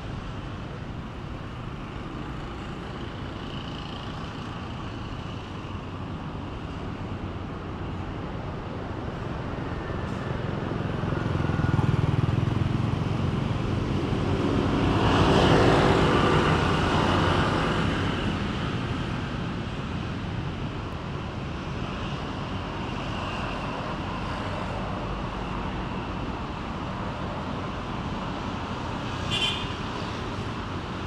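Steady road-traffic noise, with a motor vehicle passing close by about halfway through, its engine swelling up and fading away over several seconds. A brief sharp high chirp near the end.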